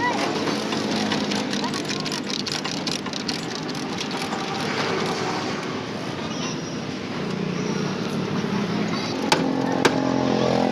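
Street traffic running past, with men's voices talking. A run of light clicks comes in the first few seconds, and there are two sharp knocks near the end.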